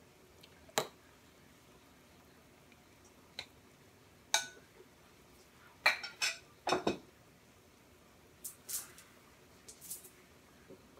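A kitchen utensil clinking and knocking against a bowl and the stockpot while foam is skimmed off boiling beef stock: scattered single clinks, with a quick run of knocks about six to seven seconds in.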